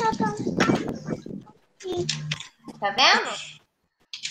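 Mostly speech: young children's voices coming over a video call in short bursts, one voice rising in pitch near the end, with a patch of clattery noise about half a second in.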